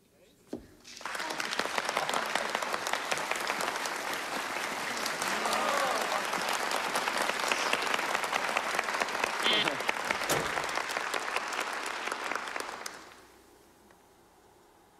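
Theatre audience applauding, starting about a second in, holding steady, then dying away shortly before the end.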